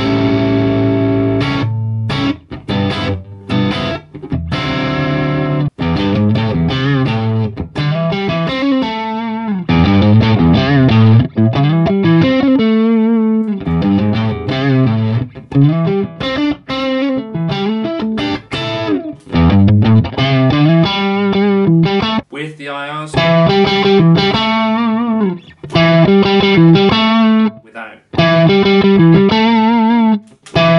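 Stratocaster-style electric guitar played through a Fractal Axe-FX III amp modeller and cab impulse response. Chords are strummed near the start, then single-note lines follow with bends and vibrato.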